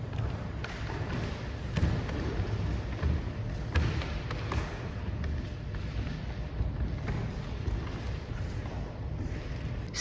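Indoor room tone with a steady low rumble, broken by scattered soft thumps and taps.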